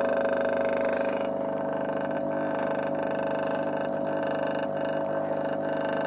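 Small speaker driver submerged in a bowl of water, driven with a steady tone at around 140 volts, giving a continuous buzzing drone with many overtones.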